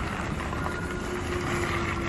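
A Tesla electric car creeping along at parking speed, giving out a faint steady hum over low rumble and wind noise on the microphone.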